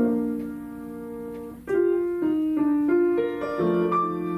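Grand piano played solo: a chord struck at the start rings and fades, then about a second and a half in the playing grows louder with a run of quick, changing notes.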